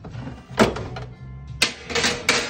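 Two sharp metal clanks about a second apart as an oven door is pulled open and its rack knocks, over music in the background.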